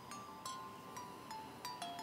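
Soft background music of bell-like struck notes, a new note every third of a second or so, each one ringing on.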